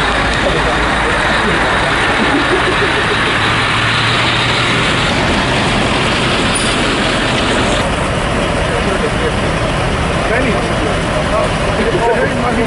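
A police water cannon truck's engine running close by, a loud steady noise with the voices of a crowd mixed in.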